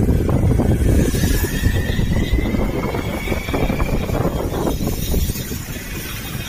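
Motorcycle being ridden, its engine rumble mixed with heavy wind buffeting on the microphone. A faint thin whine rises slowly in pitch from about a second in until about four seconds in.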